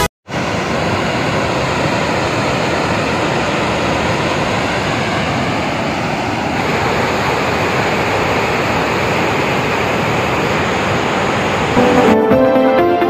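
Water pouring through open dam spillway gates and churning below, a loud steady rush that cuts in abruptly just after the start.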